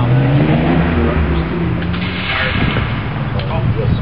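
A motor vehicle's engine running, its low pitch rising slightly, stopping suddenly a little over two seconds in. Brief faint voices follow.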